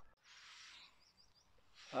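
Faint outdoor ambience: a soft hiss for the first second, then a quick run of three or four high chirps, like a small bird, about a second in.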